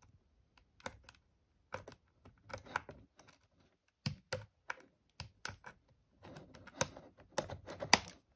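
Scissors snipping through a doll box's cardboard and clear plastic packaging: irregular sharp snips and clicks, with denser crinkling of the plastic near the end.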